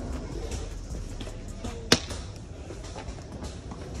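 Plastic wheeled shopping basket rolling over a tiled store floor, a steady low rattle and rumble, with one sharp click about two seconds in.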